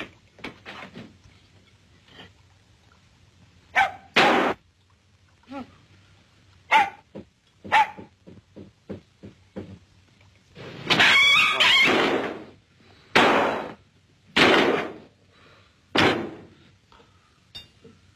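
A dog barking in short bursts, mixed with thuds and bangs, and a longer harsh, hissing noise about eleven seconds in.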